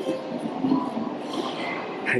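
Railway station noise: the steady rumble and hiss of a train running, with faint distant voices.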